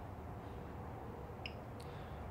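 Quiet room tone with a faint steady hum and two small clicks about one and a half seconds in.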